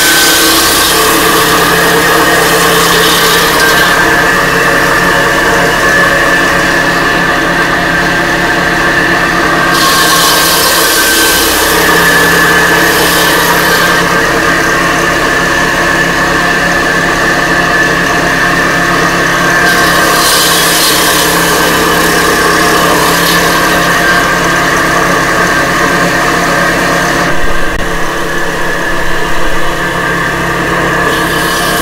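Brick-cutting machine's belt-driven circular saw blade running steadily with a constant whine while it slices clay bricks into thin cladding strips. A harsher grinding hiss of the blade biting into brick rises three times, each for a few seconds.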